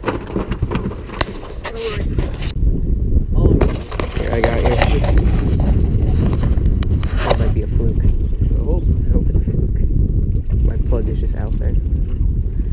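Steady low rumble of wind buffeting an action camera's microphone aboard a small boat at sea, with a few sharp knocks in the first couple of seconds and muffled voices now and then.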